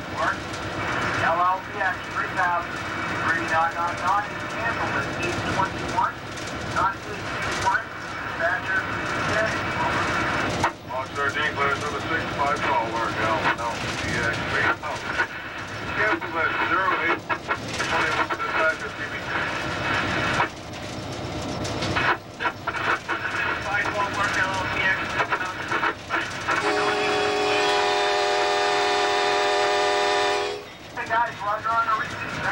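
Cab noise of a diesel locomotive running along the track, with wavering high squeals over the steady rumble. Near the end the locomotive's horn sounds one long steady blast.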